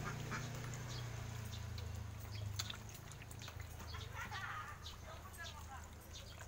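A few short animal calls, about four and five seconds in, over a steady low hum and scattered small clicks.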